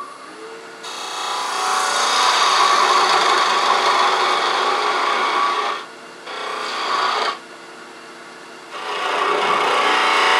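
Wood lathe spinning a small piece of wood while a hand-held turning tool cuts a small feature into it. There are three cutting passes: a long one of about five seconds starting about a second in, a short one around the seven-second mark, and another starting near the end. Between passes the lathe keeps running more quietly.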